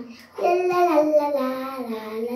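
A young child singing a long, wordless, drawn-out phrase. It starts about a third of a second in, and the held notes slide and drift lower toward the end.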